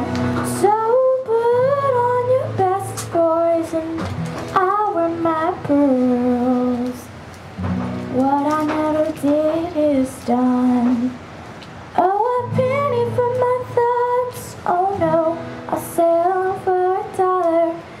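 A young girl singing a slow country ballad live, her voice rising and holding long notes, over strummed acoustic guitar, with brief pauses between phrases.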